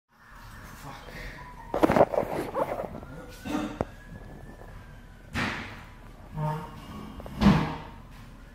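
Indistinct voices in short bursts, with a sharp knock about two seconds in that is the loudest sound, over a steady background hum.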